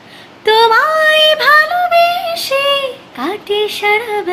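A woman singing a Bengali song unaccompanied, holding drawn-out notes that slide upward. The phrase breaks off about three seconds in, followed by a quick rising note and short sung phrases.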